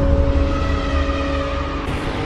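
Cinematic intro sound effect: a deep rumble with steady held tones over it, slowly easing off.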